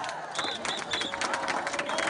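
Crowd cheering and clapping, a dense patter of claps with short, high, shrill cries over it.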